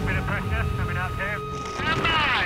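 Produced intro soundtrack: a low pulsing music bed under short, unclear voice snippets, with a steady high tone joining partway through. Near the end a falling sweep sound effect begins.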